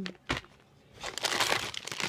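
Crinkly plastic candy bag rustling as it is handled and pulled out of a cardboard shipping box, starting about halfway through. A short click comes near the start.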